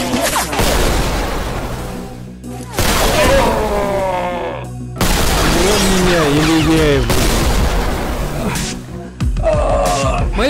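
Pistol gunshot sound effects: three loud bangs, about 3 s, 5 s and 9 s in, each trailing off, over film background music. In the middle a voice-like sound slides up and down in pitch.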